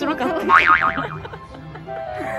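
Background music with a comic 'boing' sound effect about half a second in, its pitch wobbling quickly up and down, after a brief woman's voice at the start.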